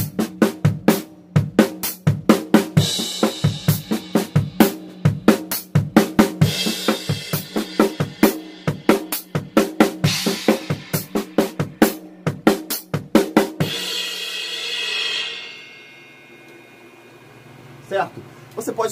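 Acoustic drum kit playing a double-stroke groove on snare, toms and bass drum, with a cymbal crash every few seconds. The playing stops about 14 seconds in, and the last cymbal rings and fades out over the next two seconds.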